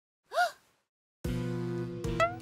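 A short, high gasp from a character's voice, rising then falling in pitch. About a second later background music comes in with a sustained chord.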